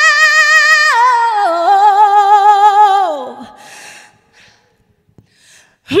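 A woman's unaccompanied solo voice singing a long, loud note with wide vibrato, stepping down in pitch about a second in and then sliding down to end about three seconds in. After a quiet pause of about two seconds she starts a new loud note right at the end.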